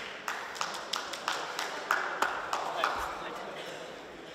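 A few people clapping, about three claps a second and slowing, over background voices.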